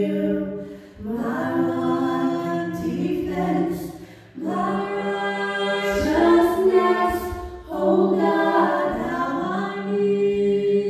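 Women's voices singing a slow worship song over a softly held low note from the band. The sung phrases break briefly about a second in, around four seconds in and again near eight seconds.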